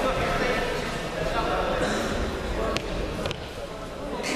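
Indistinct voices talking in a large hall, with a few sharp clicks or knocks near the end.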